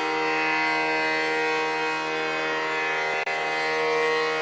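Steady tanpura drone, many sustained tones held without a break, with a momentary dropout about three seconds in.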